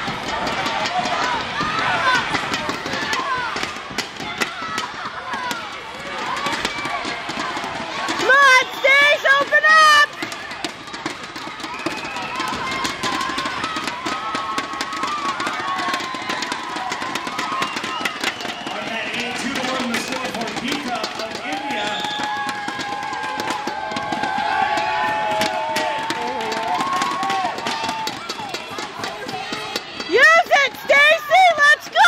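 Coaches and spectators shouting in an arena, with a few seconds of loud, close shouting about eight seconds in, and scattered short knocks underneath.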